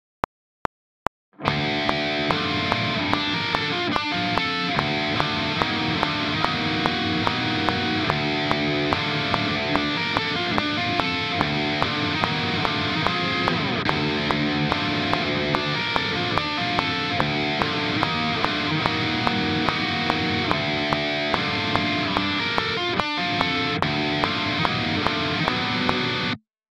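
Distorted electric guitar tuned down to D playing a black-metal riff of ringing open-string chords against a metronome click. The click counts in four beats alone before the guitar comes in about a second and a half in.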